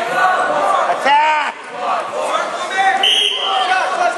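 Spectators at a high school wrestling match shouting and yelling over one another, with one loud yell about a second in. Just after three seconds a short, steady high-pitched tone sounds.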